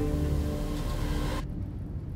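Background music: sustained held notes, turning muffled about one and a half seconds in as the treble drops away.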